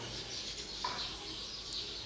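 Quiet background ambience with one brief, faint high tone just under a second in and a faint tick near the end.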